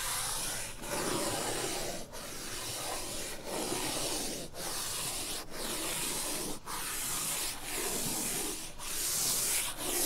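A stick of chalk rubbed on its side across a blackboard, shading in long scratchy strokes about one a second with brief breaks between them, louder toward the end. The sound is played in reverse.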